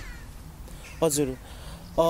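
A pause between speakers with only a low steady background hum, broken about a second in by one short syllable in a man's voice.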